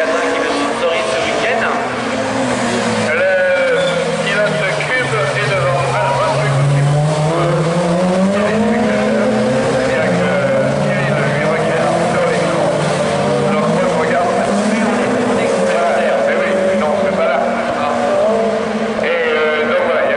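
Rallycross hatchbacks racing, several engines revving up and down through the gears at once.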